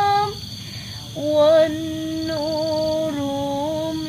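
A woman singing long, slow held notes in a wavering voice; the singing breaks off just after the start and resumes about a second in.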